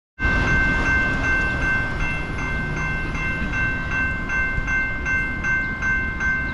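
Railroad grade-crossing warning bell ringing in an even, rapid rhythm of close to three strikes a second as the crossing gates come down, the warning that a train is approaching. A truck engine rumbles low underneath.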